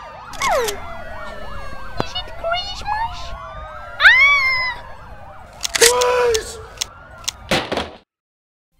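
Several police sirens wailing over one another, with sharp clicks like a camera shutter and loud, wailing vocal cries about four and six seconds in.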